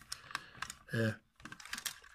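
Light, irregular clicks and taps of hard plastic parts of a Transformers Titans Return Sixshot toy figure being handled, a handful of small ticks, with a short spoken 'äh' about a second in.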